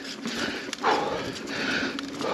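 Mountain bike rolling over a dirt singletrack trail, heard from a camera mounted on the rider: steady tyre, bike-rattle and wind noise. A sharp click comes about two thirds of a second in, and a short, loud vocal sound from the rider comes about a second in.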